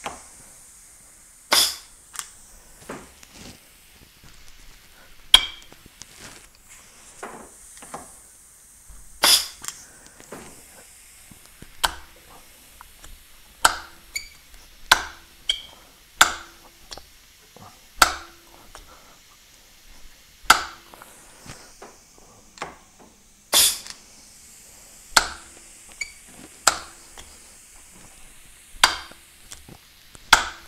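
Repeated sharp metallic clicks and clinks, about one every one to two seconds, some ringing briefly, as the regulating shroud of a switchable water pump is pushed down by hand and moves back. The shroud is sticking rather than returning freely.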